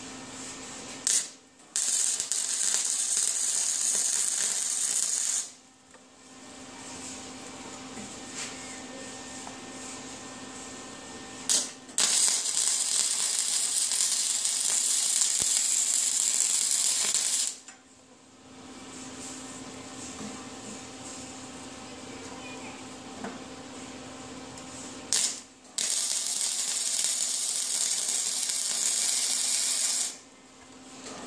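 Stick welder tack-welding a steel hub and washers onto a pulley: three welds of about four to six seconds each, each starting with a sharp pop as the rod strikes the arc, then a steady sizzling hiss. A low steady hum fills the pauses between welds.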